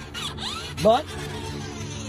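Electric drive motor and gearbox of a large 1/5-scale RC Grave Digger monster truck whirring at a steady pitch while the truck is held off the ground.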